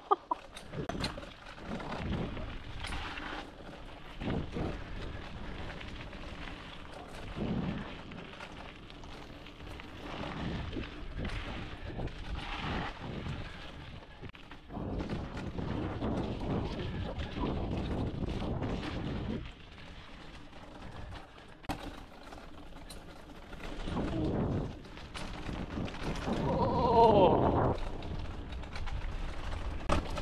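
Mountain bike descending a dirt singletrack at speed: wind buffeting the camera microphone, tyres rolling over the dirt, and a steady run of knocks and rattles from the bike over roots and bumps.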